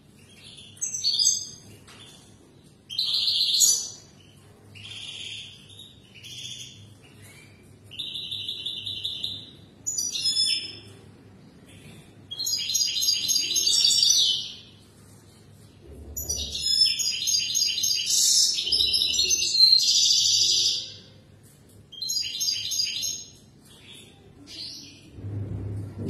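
European goldfinch singing a run of short, high twittering phrases separated by brief pauses, with one longer phrase of about five seconds in the second half.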